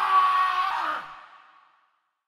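A comedic shock sound effect: a few held tones, one sliding slowly downward, over a breathy hiss, fading to silence about a second and a half in.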